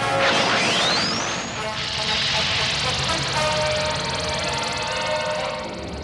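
Cartoon sound effect of a spacecraft fighter's engines firing: a rising whine over the first second or so, then a steady rushing roar as it flies away, over background music.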